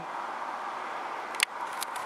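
Steady hiss of road traffic, with a single sharp click about one and a half seconds in.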